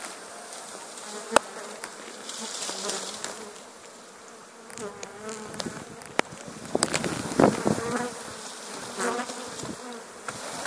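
A swarm of honeybees buzzing loudly and continuously as it is knocked off a small tree onto a sheet and into a box. A few sharp clicks and rustles of the branch and leaves being handled come through, the loudest a single click about a second in and a busier patch around seven seconds in.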